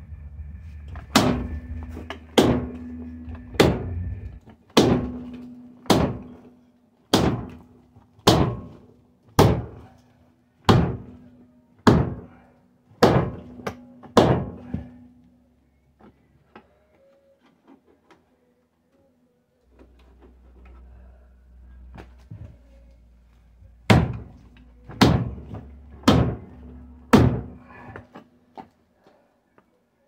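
Heavy hammer blows on steel, about one a second, each blow ringing; about twelve blows, a pause, then four more near the end. The blows are driving a new front half shaft into place.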